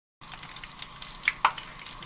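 Steady hiss from the stovetop, where frying oil heats in a pan on a lit gas burner, with a few light clicks about a second in.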